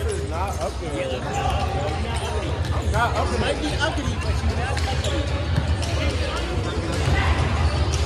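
Basketballs bouncing on a hardwood gym floor, with voices in the background.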